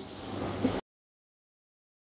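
Faint room tone picked up by a lapel microphone, cut off abruptly less than a second in, then dead digital silence.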